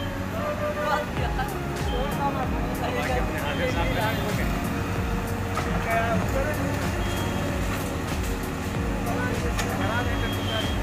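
Komatsu hydraulic excavator's diesel engine running steadily while it knocks down a brick building front, with scattered knocks of falling brick rubble, over the voices of a crowd.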